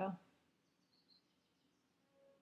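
A woman's voice finishing a word, then near silence with only a faint, brief high sound about a second in.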